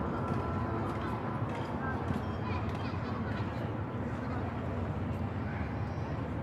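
Outdoor waterside ambience: indistinct distant voices over a steady low rumble.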